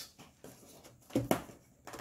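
Quiet room with two brief knocks a little over a second in, handling noise from items being picked up out of an unboxed package.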